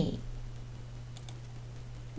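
Two quick clicks of a computer mouse a little over a second in, advancing a presentation slide, over a low steady hum.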